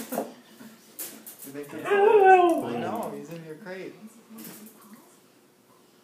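A dog whining: one drawn-out, falling, wavering whine about two seconds in, with a few fainter whimpers after it.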